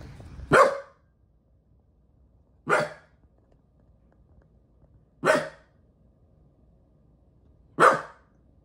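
A small terrier barking four single sharp barks, spaced about two and a half seconds apart.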